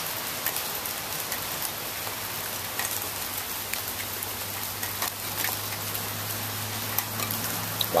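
Steady rain falling: an even hiss with scattered drop ticks. A low steady hum sits beneath it from about a second in until near the end.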